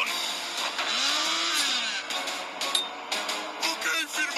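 Cartoon machine sound effects over music: a dense grinding whir with sweeping pitch glides, giving way to a run of sharp clanks and clicks in the second half.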